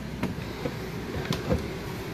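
Footsteps climbing carpeted entry steps into a motorhome and onto its floor: a few soft thumps over a steady low rumble.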